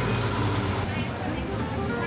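Pad thai noodles sizzling in a hot wok as they are stir-fried. About a second in, the sizzle gives way to street noise with traffic and faint voices.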